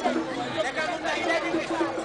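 Crowd chatter: many voices talking and calling out at once, overlapping without a break.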